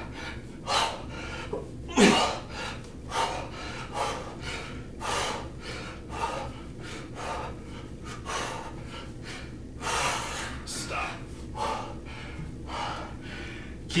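A man breathing hard from exertion during kettlebell swings, with a sharp, forceful breath roughly every second. A steady low hum runs underneath.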